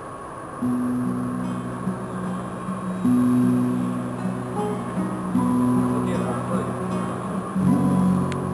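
Small acoustic ensemble playing the instrumental introduction to a song, with plucked strings and long held low notes that step from pitch to pitch.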